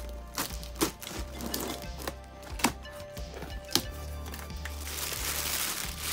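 Background music with a steady bass line, over several sharp clicks and knocks as a taped cardboard box is cut open with a utility knife and handled. Near the end comes a hissing rustle of plastic air-cushion packing being moved.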